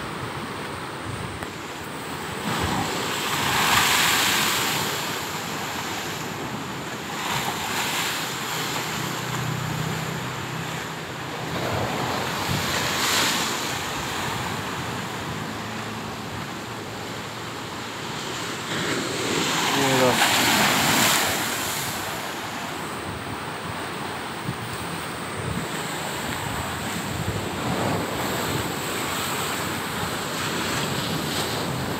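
Heavy sea surf breaking on the shore, a continuous rush of water that swells into several louder crashes, the loudest about two-thirds of the way through. The waves are unusually high, from a very high tide.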